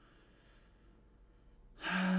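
Quiet room tone, then near the end a man's sudden sharp intake of breath that leads into a sigh.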